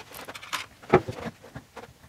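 Handling noise on a wooden workbench: a series of short clicks and knocks as a wooden mixing stick is laid down and a two-stroke engine cylinder is picked up, with the loudest knock about a second in.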